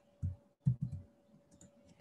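Computer keyboard keys being pressed: several short, soft keystrokes as a number is typed in.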